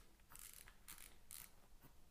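Faint short buzzes from a Soundbrenner Pulse wearable vibrating metronome, about two a second, each buzz marking a beat.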